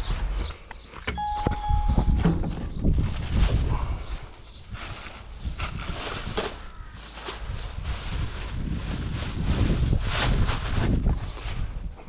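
Plastic bags rustling and crinkling and a plastic fuel funnel being handled, in many short irregular crackles over a low rumble, with a brief steady tone about a second in.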